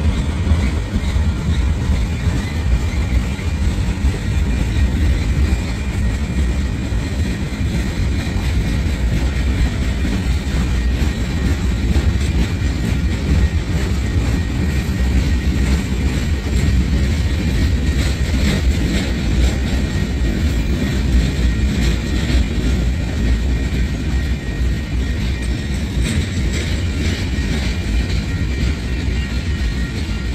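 Long freight train of loaded flatcars rolling past at steady speed: a continuous loud, deep rumble of steel wheels on the rails, with faint steady high tones over it.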